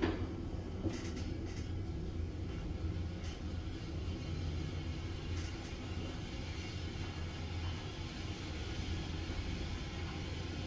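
ThyssenKrupp synergy BLUE lift car travelling downward: a steady low rumble with air hiss. A knock comes right at the start, then a few faint clicks.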